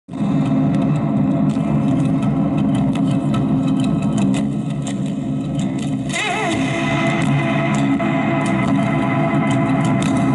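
Amplified acoustic-electric guitar being played live: a busy run of low plucked notes. About six seconds in, a high held note rings out over it with a wavering vibrato.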